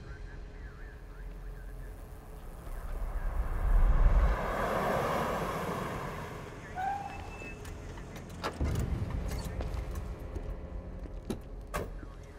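A car driving up at night: its engine and tyre rumble swell to a peak about four seconds in, then fade as it slows. Several sharp knocks follow in the second half.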